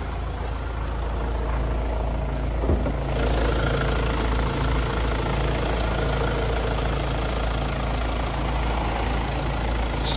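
Kia Sorento's 2.2-litre CRDi four-cylinder turbo-diesel idling steadily and evenly, with no unusual noises. A light thump comes about three seconds in as the bonnet is raised, and after it the engine is heard more clearly.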